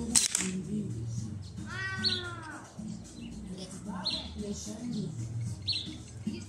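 A single slingshot shot about a quarter-second in, a sharp crack that puts out the candle flame. About two seconds later a voice calls out with a falling pitch, over murmuring voices and a few bird chirps.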